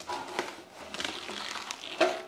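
Neoprene fermenter jacket being pulled over the top of a stainless conical fermenter, the fabric rustling and scuffing, with a few soft knocks.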